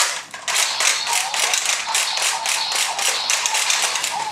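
DonBlaster transformation toy with a Sentai Gear set in it, giving a steady run of rhythmic clicks about five a second. This is the gear being spun and the blaster on standby, just before it calls out the gear.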